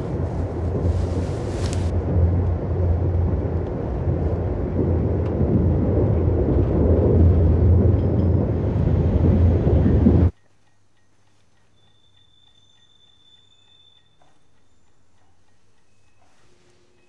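A loud, dense low rumble with a steady hum underneath, swelling slightly, then cut off abruptly about ten seconds in. What follows is much quieter, with a faint thin high tone for a couple of seconds.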